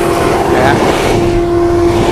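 A 2 HP dust collector running, with a steady motor hum and air rushing in through the cyclone separator's inlet under suction.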